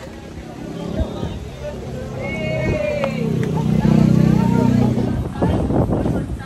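A motor vehicle engine running close by, building up about three seconds in and fading near the end, over voices and footsteps.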